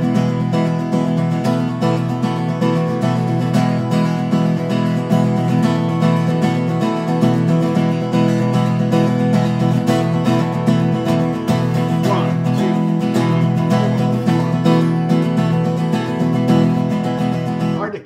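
Acoustic guitar strummed at full tempo in a steady, driving sixteenth-note groove, moving between an open E major chord and E sus4. The strumming is continuous, with rapid, even strokes, and stops at the end.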